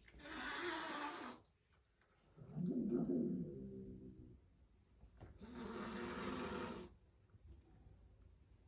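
Kitten hissing twice, long breathy hisses several seconds apart, with a louder drawn-out call that falls in pitch between them.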